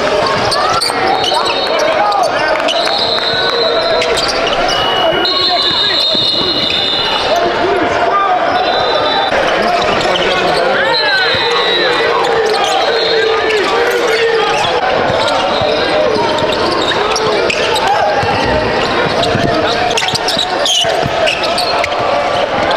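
Live basketball game sound in a large gym: a ball bouncing on the court, sneakers squeaking in several short high squeals, and players and spectators talking.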